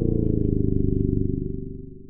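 Electronic intro sound of a hip hop track: a low buzzing synth tone whose overtones slide downward, then level off and fade away near the end.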